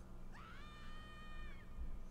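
A single high-pitched, drawn-out cry, meow-like, rising at the start and then held for about a second before it drops away.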